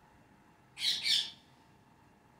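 Rose-ringed parakeet giving two quick, harsh screeches about a second in.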